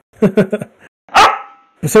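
A brief laugh, then a single loud, sharp sound a little over a second in, with a short ringing tail.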